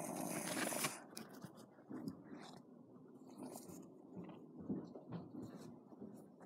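Faint rustling and light scraping knocks of small plastic toy figures being handled and shifted on a cardboard floor, after a brief hiss in the first second.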